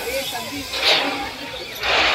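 Indistinct voices of people outdoors over a steady hiss, with two short, louder bursts of noise about one and two seconds in.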